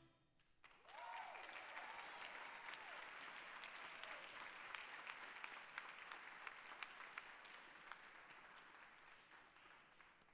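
Audience applauding at the end of a jazz band piece, starting about a second in with a whoop of cheering, then slowly fading toward the end.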